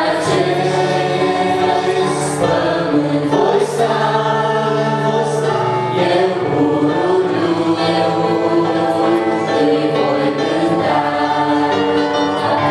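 A small mixed group of male and female voices singing a Romanian Christian song in harmony, accompanied on a Roland EP-880 digital piano.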